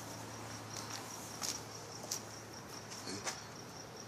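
Crickets chirping at night: a steady run of short, evenly repeated high chirps, with a few brief clicks.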